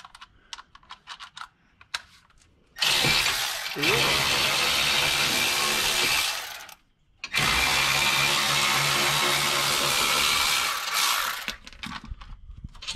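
Cordless electric ratchet running in two spells of about four seconds each, with a short pause between, backing out the brake caliper bolts on a steering knuckle. Before it, a few light clicks of the tool being handled.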